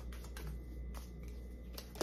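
Tarot cards being shuffled by hand: light, irregular clicks of card against card, with a sharper snap right at the end.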